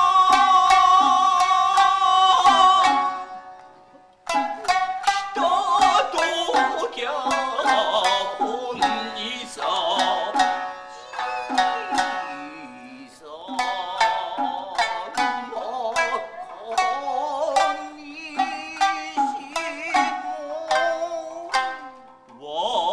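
Kiyomoto-bushi music: a shamisen plucked in sharp strokes under a high, held singing voice. The long sung note breaks off about three seconds in, and after a short pause the shamisen resumes with singing coming in and out.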